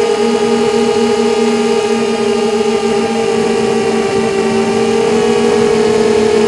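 QAV250 quadcopter's Lumenier 2000 kv brushless motors spinning Gemfan 5x3 props at cruising throttle, giving a loud, steady whine of several close pitches that drift slightly up and down as the throttle changes.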